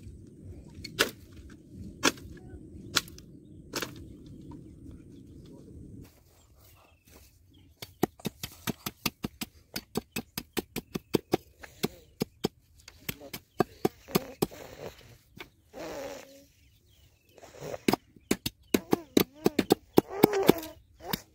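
Sharp knocks about once a second over a low rumble, then rapid short strikes, several a second, of a sickle blade digging into the soil at the foot of a bamboo stake.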